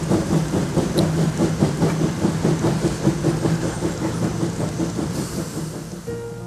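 A train running on the rails, its wheels clattering in an even rhythm of about five beats a second over a steady low rumble, slowly fading away.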